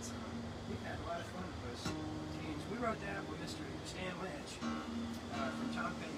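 Steel-string acoustic guitar being strummed, with held chords ringing between strokes, and a voice over it.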